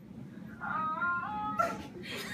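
Soft, high women's voices singing a few held, slightly gliding notes in harmony, beginning about half a second in and fading out near the end.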